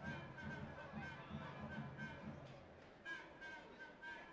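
Faint sports-hall background sound with a low rhythmic pulse, about three a second, that fades out after a couple of seconds.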